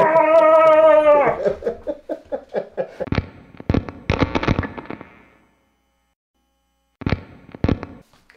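A man's drawn-out shouted 'woo' for about the first second, then a logo intro sound effect: a run of sharp cracks and knocks that thins out over a few seconds, a short silence, and two more knocks just before the end.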